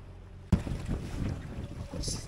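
Wind buffeting the microphone over choppy water sloshing between a yacht's hull and a concrete pontoon wall, starting abruptly about half a second in after a faint low hum.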